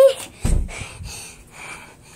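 A child breathing hard, close to the microphone, in a few noisy breaths. About half a second in there is a loud low blast of breath or a bump on the microphone.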